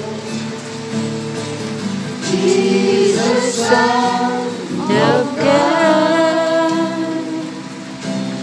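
Worship song sung by a group of voices over steady sustained accompaniment, with long held notes.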